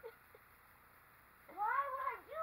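Quiet at first; about one and a half seconds in, a high-pitched, drawn-out vocal cry starts, rising and then wavering up and down in pitch.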